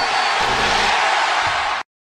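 A steady hissing rush of noise from an outro logo sound effect, cutting off abruptly shortly before the end.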